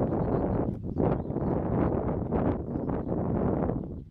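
Gusting wind buffeting the microphone, over the distant running of a light aircraft's engine as it taxis on a grass strip.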